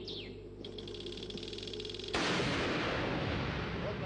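Automatic gunfire: a fast, even run of shots, then about halfway a sudden, much louder and denser stretch of firing.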